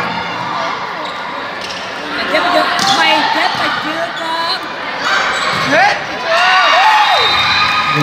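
Indoor volleyball rally: the ball struck with a sharp smack about three seconds in, sneakers squeaking on the court, and young women players shouting short calls to each other, echoing in a large sports hall.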